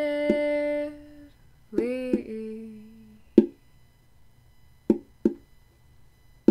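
Lo-fi home recording of a quiet song's break: a voice hums a held note, then another that slides in about two seconds in and fades. This is followed by a few sharp, isolated plucked notes, over a faint constant whine from a faulty microphone.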